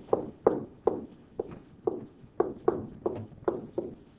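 Pen stylus tapping and clicking against a tablet screen while a word is handwritten: about a dozen short, irregular clicks as the strokes go down.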